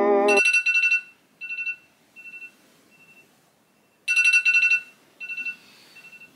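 Wake-up alarm beeping: a short burst of rapid high-pitched beeps followed by fainter repeats that fade away, with a second loud burst about four seconds in.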